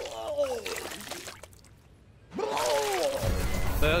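Cartoon soundtrack: a character's wordless vocal sounds, then a brief near-silent gap and another vocal sound. Background music with a heavy low bass comes in near the end.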